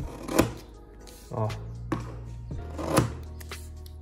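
Scissors cutting through a stack of four paper slips, a few short sharp snips, over low background music.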